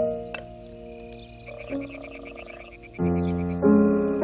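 Piano notes die away. In the lull a frog croaks with a fast pulsing call, and loud piano chords come back in about three seconds in.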